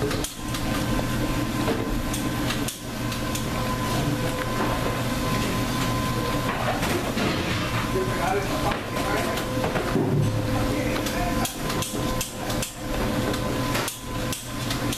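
Gloved hands squeezing and mixing ground meat with liquid in a stainless steel bowl, over a steady kitchen machine hum with frequent knocks and clatter.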